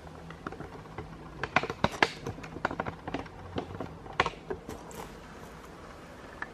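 Handling noise: irregular light clicks and taps, a few close together and some louder, thinning out near the end.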